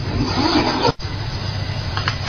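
Tap water running onto hands at a sink as they are wetted for handwashing, an even hiss over a steady low hum, broken by a brief dropout just before a second in.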